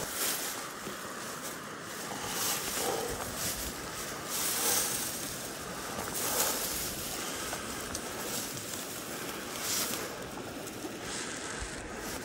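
Small creek running: a steady rushing hiss of moving water that swells now and then.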